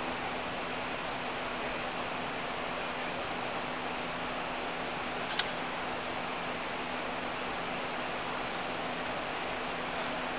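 Steady hiss with a faint low hum, broken once by a short sharp click about five seconds in.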